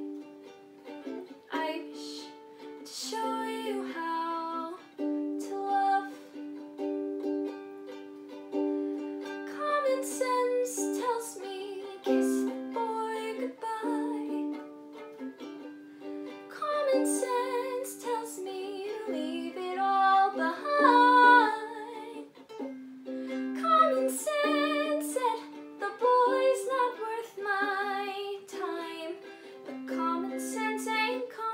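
Ukulele strummed in chords with a girl singing along, her voice wavering in vibrato on held notes.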